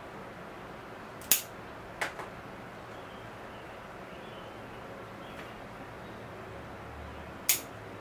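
Bonsai pruning scissors snipping twigs off a Ficus microcarpa bonsai: a sharp snip about a second in, a softer one shortly after, and another sharp snip near the end, over a faint steady hiss.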